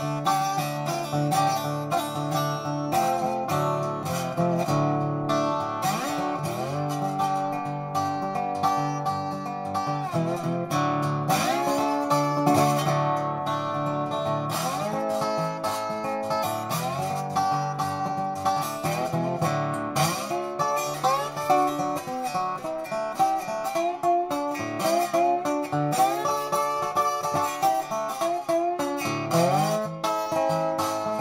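Dobro resonator guitar being fingerpicked in a free solo improvisation, with notes sliding up into pitch under the slide and a low note sounding under the melody in the first half.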